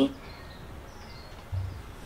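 Faint steady background noise with a few faint high chirps, and a soft low bump about one and a half seconds in.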